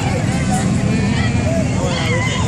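Slow-moving cars passing close by, a steady low rumble of engines and tyres, with people chattering in the background.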